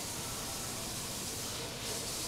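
Steady, even background hiss with no distinct sounds in it.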